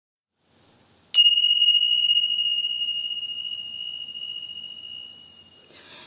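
A small bell struck once about a second in, ringing one clear high tone that slowly fades away over about four and a half seconds.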